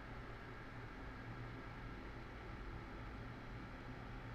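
Small electric ceramic space heater running just after being switched on: its fan blowing a faint, steady whoosh with a low hum.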